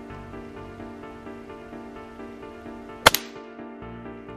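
A single rifle shot about three seconds in, sharp and by far the loudest thing, its report trailing off briefly. Steady background music plays throughout.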